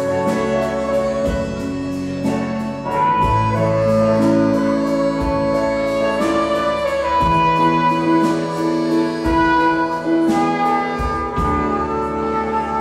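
Live band music: a trumpet plays a melody of held notes over a drum kit, with regular drum and cymbal strikes.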